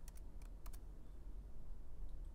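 Laptop keyboard keystrokes: four or five quick taps in the first second, then only a low steady hum.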